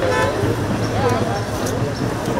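A crowd of voices talking and calling out, with a short car horn toot near the start.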